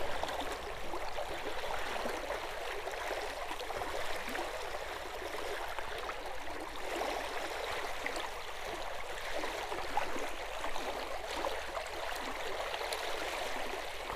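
Fast-flowing shallow creek running over rocks and riffles: a steady rushing of water in a strong current.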